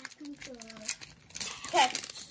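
Brief, indistinct speech from a young voice, with light rustling in the second half.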